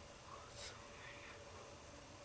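Near silence: faint room tone with a steady low hum, and one faint short hiss just after half a second in.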